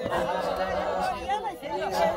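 A group of Maasai men chanting together, several voices at once: a steady low hum runs underneath while higher voices hold and slide their notes.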